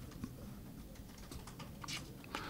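Quiet room tone with a few faint, short clicks spread through it.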